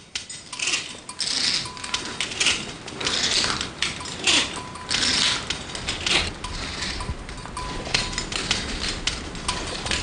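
Metal clinking and rattling of a climbing ladder as someone climbs it, sharp clinks mixed with rough rustling bursts about once a second.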